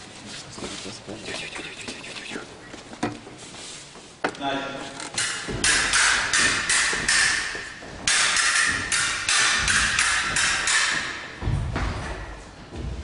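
Stage-combat fight with rapiers: scattered knocks and footwork on the wooden floor, then from about five seconds in a loud, fast run of blade clashes mixed with shouts, and a low thud near the end.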